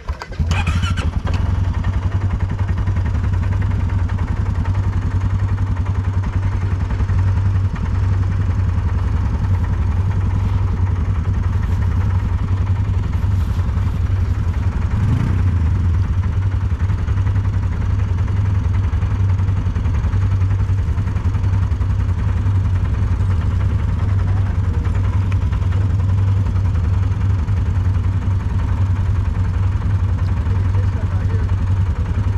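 Quad ATV engine starting about half a second in, then idling steadily, loud and close.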